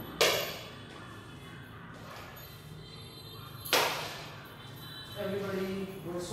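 Two sharp knocks about three and a half seconds apart, each with a short ringing tail in a large room, over faint background music. A voice comes in near the end.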